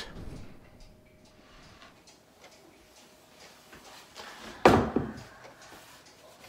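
Faint room tone, then a single sharp knock about three-quarters of the way through that dies away quickly.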